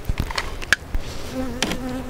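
Honey bees buzzing around an open hive, with one bee's buzz coming close and holding steady from a little past halfway. A few light clicks and knocks of the wooden hive boxes being handled, mostly in the first second.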